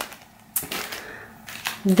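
Clear plastic packaging of sticker packs being handled: soft crinkling and rustling with a few sharp clicks, the first about half a second in.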